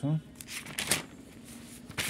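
A brief rustle of notebook paper being handled, a page turned over, with the loudest stroke about a second in.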